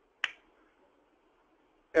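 A single short, sharp click about a quarter second in: a computer mouse button clicked to bring up the next bullet on a presentation slide.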